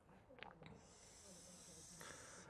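Faint hiss of a dry-erase marker drawn in a long straight stroke across a whiteboard, preceded by two small ticks about half a second in.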